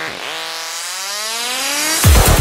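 Beatless Goa trance build-up: a synthesizer tone dips low, then sweeps steadily upward in pitch, with the kick drum coming back in right as it ends.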